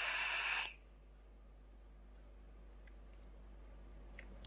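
Hissing draw through a rebuildable dripping atomizer on a vape mod fired at 70 watts, cutting off under a second in. Only faint room noise follows while the vapour is held.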